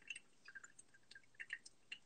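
Faint trickling of hot water poured from a gooseneck kettle onto coffee grounds in a paper-filtered pour-over dripper, heard as scattered small drips and ticks.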